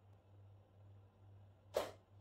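A faint steady low hum, and near the end a single short, sharp burst of noise while liquid is poured from a plastic jug into a small plastic spray bottle.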